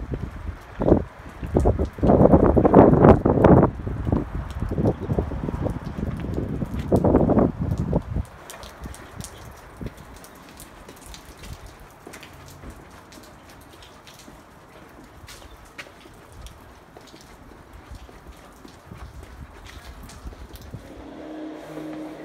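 Wind buffeting the phone's microphone outdoors, loud and gusty for the first eight seconds or so. It then drops to a quieter stretch with faint scattered ticks of footsteps on wet pavement.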